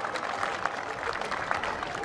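Crowd applauding and cheering, with dense clapping and scattered voices mixed in.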